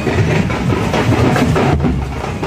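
A group of hand-held frame drums beaten with sticks, a dense, continuous run of strokes.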